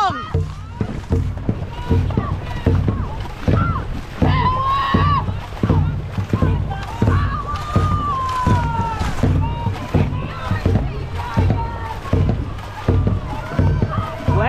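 Dragon boat paddles driving and splashing through the water in quick repeated strokes during a race, over a steady rush of water along the hull. Drawn-out shouted calls from the crew come about four seconds in and again around eight seconds.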